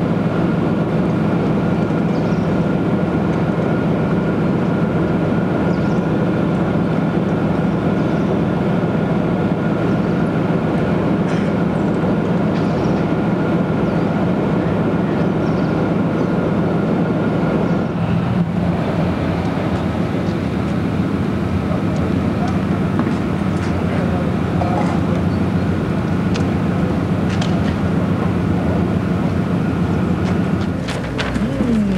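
Armoured vehicles' diesel engines idling: a steady low drone with a thin, steady whine above it, which drops away for a few seconds about halfway through.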